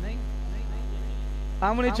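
Steady electrical mains hum through a microphone and sound system, a low even drone that carries on under the pause in speech. A man's voice comes back in near the end.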